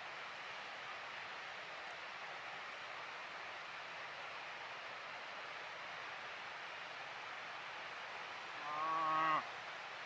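Steady hiss of open-air background noise, then, about a second before the end, one short call lasting under a second, held at a steady pitch. This call is the loudest sound.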